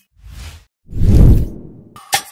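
Two whoosh transition sound effects: a short soft one, then a louder, longer one about a second in.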